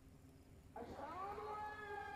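Near silence, then about a second in a single voice begins a long sung note, sliding up into pitch and holding it: the opening of a devotional chant.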